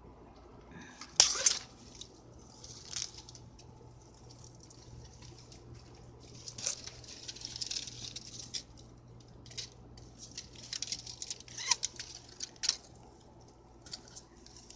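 Grapevine leaves and stems rustling close to the microphone as the vine is handled, with a few sharp clicks and snaps, the loudest about a second in.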